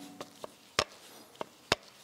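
Hand grease gun pumping grease into a grease nipple: a handful of sharp clicks, the loudest two about a second apart.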